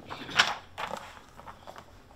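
Creaking of a padded armchair as a man shifts his weight in it, one short loud creak about half a second in followed by a couple of weaker ones.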